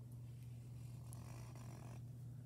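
Faint scratching of a marker drawing on paper, over a steady low hum.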